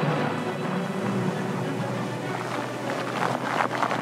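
Background music over a steady hiss of heavy rain and wind.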